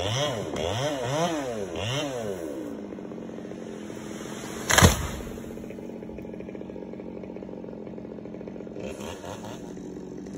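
Chainsaw high up in a tree, heard from the ground, its engine revving up and down several times while cutting, then settling to a steady idle about three seconds in. A single loud thump comes about halfway through.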